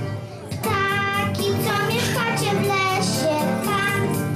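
A young girl singing a Christmas song into a microphone over a backing track with a steady beat; after a brief pause between phrases she comes back in about half a second in.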